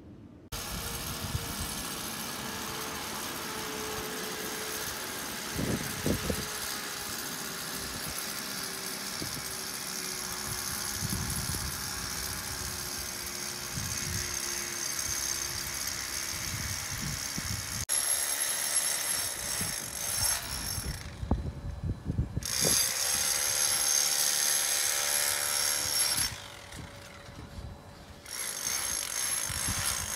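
A handheld power tool running steadily on a construction job, stopping for a second or two twice in the last third.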